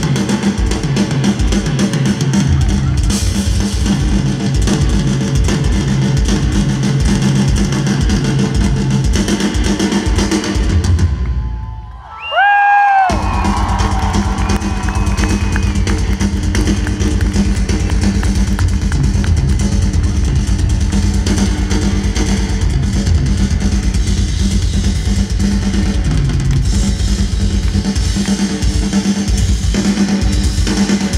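A rock band playing live, with a drum kit driving a steady beat under guitar. The music drops out briefly about twelve seconds in, then comes back in full.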